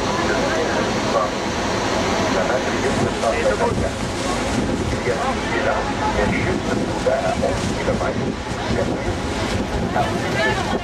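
Steady rush of water falling at Niagara's American Falls, mixed with wind buffeting the microphone. Passengers' voices come through faintly.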